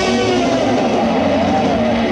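Live rock band playing loud distorted electric guitar, with notes that bend and waver in pitch over a thick wash of noise.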